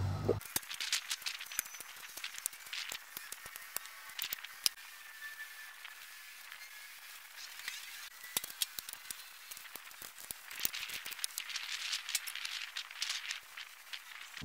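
Light rustling and crackling with many scattered small clicks from work in straw and compost, busier in the second half.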